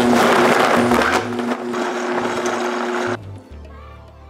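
High-speed countertop blender running at full power on a thick load of frozen mango, pineapple and banana with no ice: a steady motor hum under loud churning. It cuts off suddenly about three seconds in.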